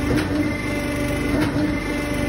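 Steady machinery hum with a constant whine, with two short clicks about a second apart.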